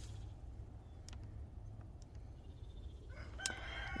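Faint low rumble, with a distant bird's call near the end.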